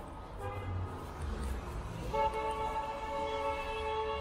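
A car horn honks in street traffic: a brief faint toot about half a second in, then one long steady blast starting about halfway through and lasting about two seconds, over a low traffic rumble.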